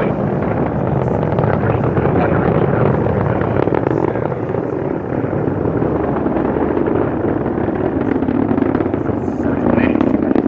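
Atlas V rocket's RD-180 first-stage engine heard from about three miles away as it climbs after liftoff: a loud, steady, crackling rumble.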